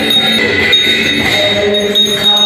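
Devotional kirtan music: voices singing over a steady high metallic ringing, with jingling percussion.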